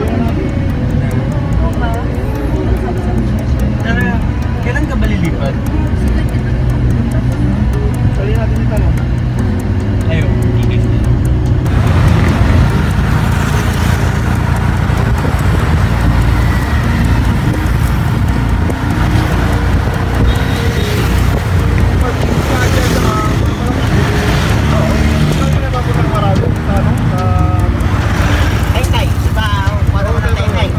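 Steady low rumble of a moving vehicle heard from inside it, with music and indistinct voices over the top. The sound changes abruptly about twelve seconds in, at a cut in the recording.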